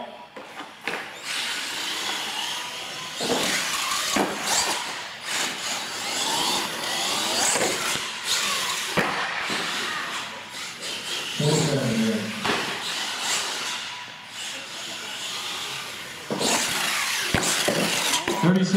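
Electric R/C monster truck motor and gears whining, surging and easing again and again as the throttle is worked.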